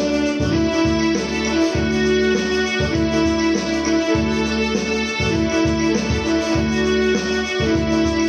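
Electronic keyboard played in a piano voice, carrying a Hindi film song melody over sustained notes and a moving bass line.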